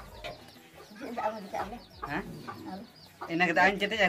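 Chickens clucking: a run of short, separate calls, with loud talking starting near the end.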